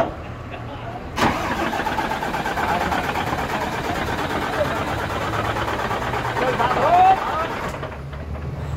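A race truck's diesel engine turned over for about six seconds and then cut off: a restart attempt on a truck that stalled after running out of diesel.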